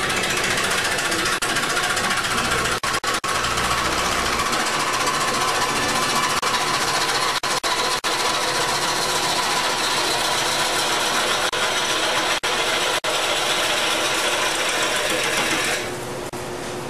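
A turning gouge cutting into a large, rough, out-of-round wood blank spinning on a lathe: a loud, continuous rapid chatter of the interrupted cut, broken by a few brief dropouts.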